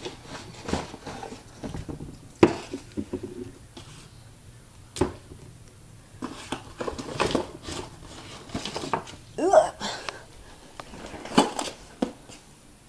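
Handling noises as a shoebox and its contents are moved about, with scattered knocks and clicks. The sharpest come about two and a half, five and eleven and a half seconds in.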